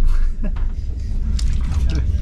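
Passenger train running, a steady low rumble inside the carriage, with a few brief snatches of voice over it.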